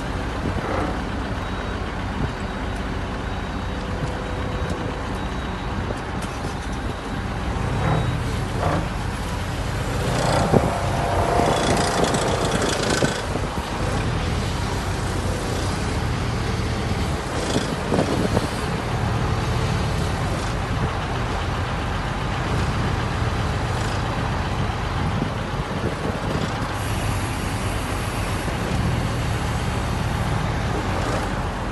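Diesel engine of a loader running steadily, with a louder stretch about ten to thirteen seconds in and a few short knocks.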